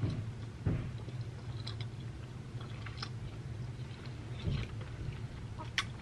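A person chewing a bite of air-fried chicken drumstick, with soft wet mouth clicks and smacks scattered through, over a low steady hum. The chicken is tender.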